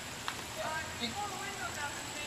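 A faint, distant voice talking over a steady background hiss, with one short click just after the start.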